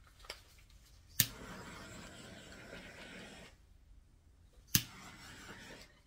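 Small handheld gas torch clicked on twice, each click followed by a steady hiss of flame, as it is passed over wet acrylic pour paint to pop bubbles. The first burn runs about two seconds; the second starts just before five seconds and stops near the end.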